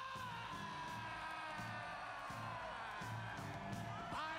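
Live rock music: a long held note that slowly falls in pitch, over a steady bass-and-drum beat with regular cymbal hits.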